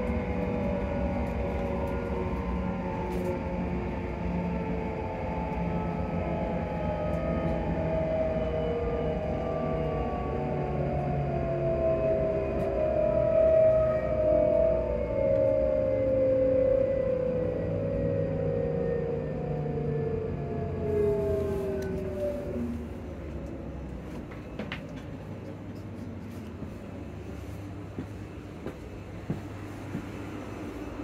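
ScotRail Class 334 electric multiple unit's traction motors whining, heard from inside the carriage, with several tones falling steadily in pitch as the train brakes for a station. The whine dies away about 22 seconds in, leaving quieter rumbling running noise.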